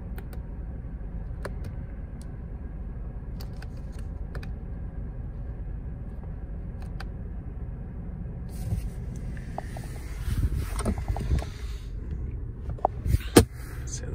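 2021 Ford Bronco Sport's 1.5-litre EcoBoost three-cylinder idling in Park, a steady low hum heard from inside the cabin. About eight seconds in a hiss joins it, then a scatter of clicks and knocks, the sharpest near the end.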